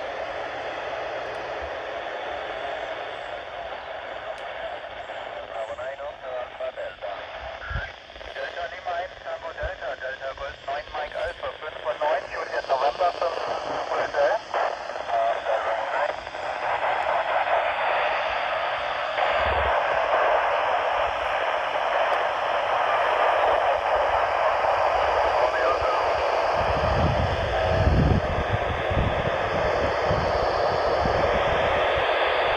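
AO-91 FM satellite downlink heard through a Yaesu FT-470 handheld's speaker: radio hiss with fragments of stations' voices, breaking up and fluttering as the signal fades in and out, then steadier noise from about halfway through. A few low thumps near the end.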